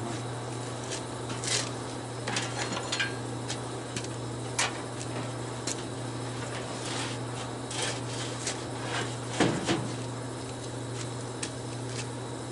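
Scattered knocks and bumps, with a short scrape near the end, as an orange go-kart body shell is carried over and set down onto a red riding-mower chassis. A steady low hum runs underneath.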